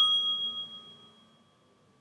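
A phone's bell-like ringtone for an incoming call placed by the dialer, its last ring dying away over about a second as the call is answered.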